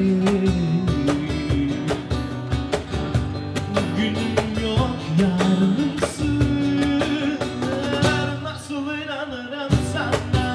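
Live Turkish-style acoustic groove: a man singing over a nylon-string classical guitar, a second acoustic guitar and cajon hits keeping a steady beat.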